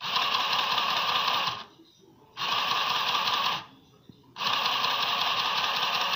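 Irit HOME ARP-01 mini electric sewing machine stitching through fabric, running in three spells of one to two seconds with brief stops between.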